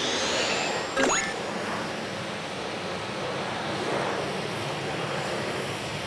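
Jet airliner taking off: a steady rushing engine noise that swells gently and eases off. About a second in, a short rising whoosh.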